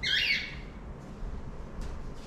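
A brief, high-pitched slurp as kava is sipped from a bowl, followed by low room noise.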